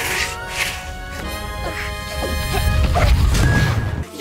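Cartoon soundtrack music with swishing sound effects, building to a loud, deep crash near the end that cuts off suddenly.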